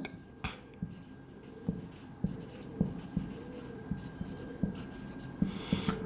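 Marker pen writing on a whiteboard: quiet strokes with irregular light taps as the tip meets the board.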